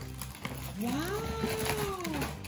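A single long, drawn-out "waaow" call, just under a second in, that rises and then falls in pitch over about a second and a half. It sounds meow-like.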